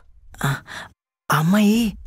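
A man's voice in film dialogue: two short wordless vocal sounds, then, after a brief gap of dead silence, one drawn-out, sigh-like voiced sound at a steady pitch.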